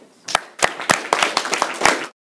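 A classroom audience applauding, with separate claps audible, starting a moment after the closing "thank you".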